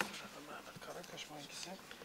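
Faint, indistinct voices murmuring quietly away from the microphone, with a short click at the very start.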